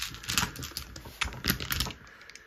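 Plastic six-sided dice clicking and clacking together as they are handled and gathered over a felt dice tray: a loose, irregular run of short clicks.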